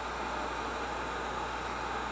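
Electric heat gun running steadily, its blower giving a constant airy hiss while it heats adhesive-lined heat-shrink tubing.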